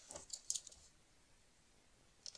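A few faint, short scratches and ticks from a pen and cardstock being handled and marked in the first moments, then near silence.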